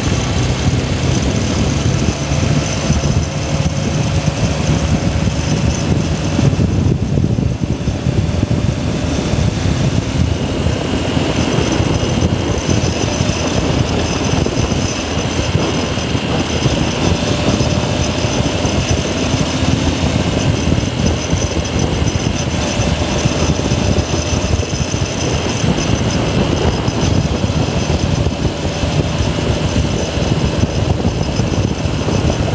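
Motorcycle riding steadily along a city road: the engine running under heavy wind noise on a handlebar-mounted phone microphone.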